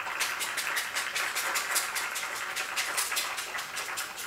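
Hands clapping quickly and steadily, about six sharp claps a second.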